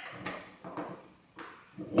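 Small wooden blocks and an aluminium profile being set into the jaws of a small machine vise: a few faint knocks and clicks.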